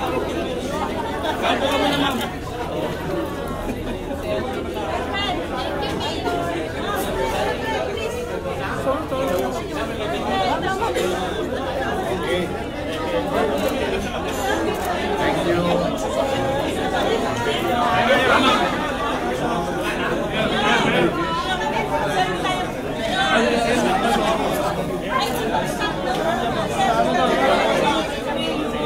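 Indistinct chatter of many people talking at once.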